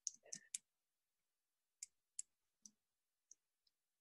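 Near silence with a handful of faint, short clicks scattered through it, several of them close together in the first second.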